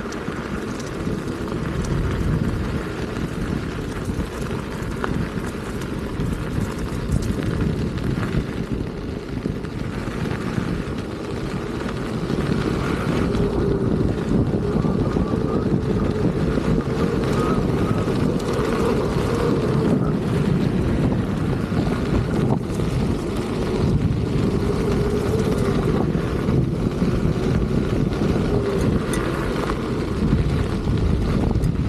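Wind buffeting the microphone of a moving electric unicycle rig, a steady low rumble that grows a little louder about halfway through. A faint, wavering whine from the Begode Master's hub motor runs under it in the second half.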